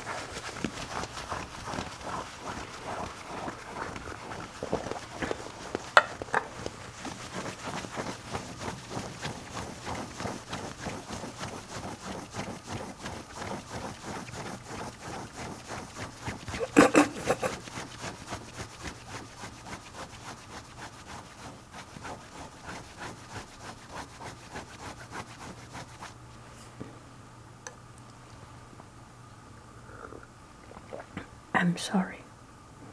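Fingernails scratching a glazed ceramic plate in quick, even strokes, about three a second, gradually getting quieter and thinning out near the end. A sharp knock stands out about six seconds in, and a louder one just past halfway.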